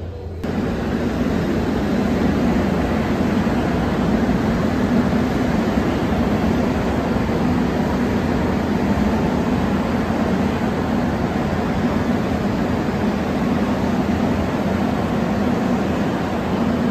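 Suin-Bundang Line electric commuter train running into the station behind the glass platform screen doors, a loud steady rolling noise of wheels on rail and running gear that sets in about half a second in and holds level.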